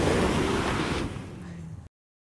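A car pulling away: a steady engine hum under a loud rush of road and wind noise. It falls away about a second in and cuts off abruptly just before the end.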